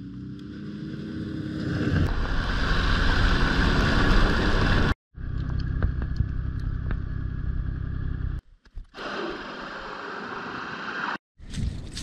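A motor vehicle's engine running, its pitch rising slightly at first, then running louder. It is heard in several short segments broken off by abrupt cuts.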